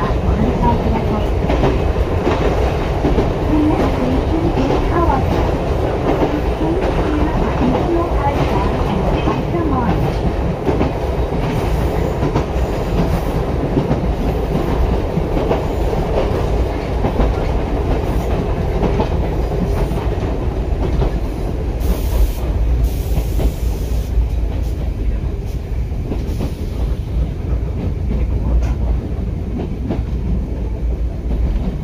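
Ichibata Electric Railway train running along the line, heard from inside the car: a steady, continuous rumble of wheels on the track.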